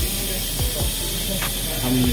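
Air hissing steadily out of the OCAMASTER OM-K6 EDGE vacuum OCA lamination machine's chamber as it is vented through the exhaust at the end of its debubbling cycle.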